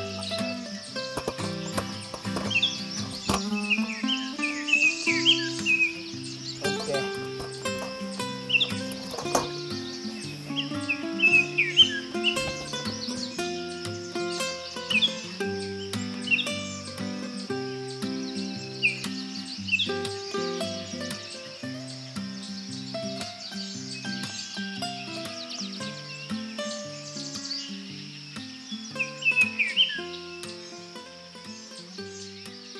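Instrumental background music with a melody over a moving bass line, with short bird chirps scattered through it and a steady high-pitched buzz behind.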